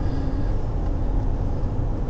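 Steady low rumble of a car driving along, engine and tyre noise heard from inside the cabin.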